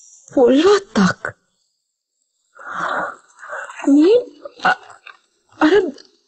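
Speech only: a voice speaking in short, broken phrases with pauses between them, and a breathy, hissing sound about three seconds in.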